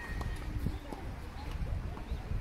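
Tennis players' quick running footsteps on an artificial-grass court, with a low rumble throughout and faint voices.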